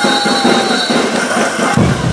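Dense, loud mix of a brass band and crowd at a caporales dance, with a steady high tone running through it. Deep bass from drums and low brass comes in abruptly near the end.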